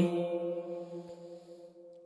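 Reverberation of a Quran reciter's long held note at the end of a verse, keeping its pitch and fading away over about two seconds.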